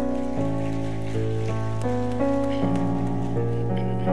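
A worship band's keyboard playing slow sustained chords, changing about once a second, as the instrumental introduction to a hymn.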